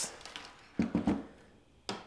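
Quiet handling of the 101 Hero printer's injection-moulded plastic frame: a brief low hum of voice about a second in, then a single light knock near the end as the frame is set down on the table.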